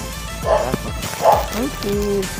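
A dog barks twice, about half a second in and again just past a second in, over background music.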